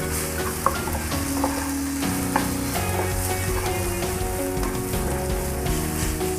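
Chopped onion, tomato and ground spices sizzling steadily in hot oil in a ceramic-coated frying pan, with a wooden spatula stirring them through and giving a few light scrapes and taps. The masala is being fried in the oil.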